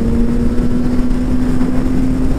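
Suzuki naked motorcycle's engine at a steady cruise, its note creeping slightly up in pitch, heard through loud wind and road rush on the rider's helmet camera.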